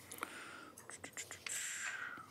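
Faint desk handling near a microphone: a few small sharp clicks, then a soft breathy hiss about three-quarters of the way in.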